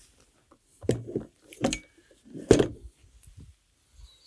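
A QSC CP12 powered PA speaker being lifted and lowered onto a tripod speaker stand: three knocks and bumps of the cabinet against the stand, the loudest about two and a half seconds in, with light rattling between.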